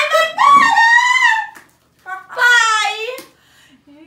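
Wordless, high-pitched squealing voices of a woman and a girl: one drawn-out squeal lasting about a second and a half, then a shorter one about two seconds in.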